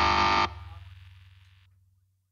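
The final chord of a hardcore song ringing on distorted electric guitar, cut off sharply about half a second in, with a low bass note left to fade out over the next second.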